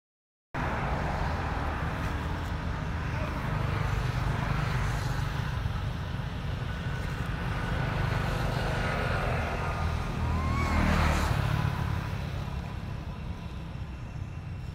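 Steady low outdoor rumble and hiss, swelling a little around eleven seconds in, with one short rising squeak about ten and a half seconds in.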